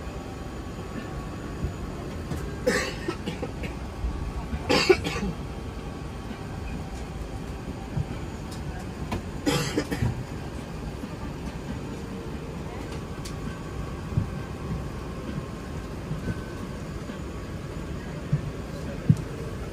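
Steady low drone of an Airbus A380 cabin in flight, with three short sharp noises in the first ten seconds.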